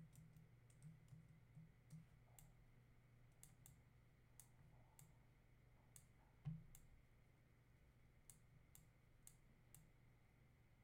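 Faint, irregular clicking of a computer mouse, roughly two clicks a second, with one louder click about six and a half seconds in, over a steady low hum.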